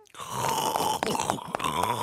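A cartoon zombie's voice snoring and groaning in its sleep: one long drawn-out sound starting just after the beginning.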